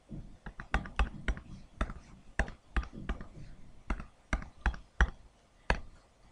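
A quick, uneven run of sharp clicks, about two or three a second, each one a key press entering a multiplication into an on-screen TI-83 Plus calculator. The clicks stop shortly before the end.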